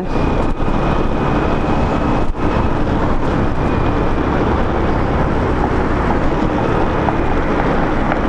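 Steady rush of wind on the microphone and road noise from a Honda Biz step-through motorcycle riding along at speed.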